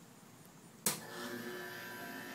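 Battery-powered toy bubble gun: a sharp click just under a second in, then its small motor buzzing steadily.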